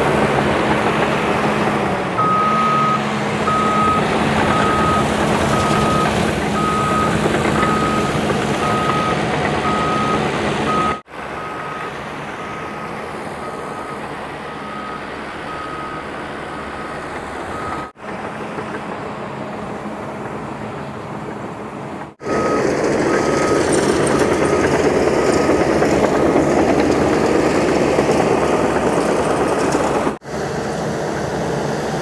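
Caterpillar D5 crawler dozer's diesel engine running steadily under load while its backup alarm beeps about twice a second as it reverses. The sound drops away briefly about 11, 18 and 22 seconds in, and the beeping is absent in the quieter middle stretch and fades out soon after it returns.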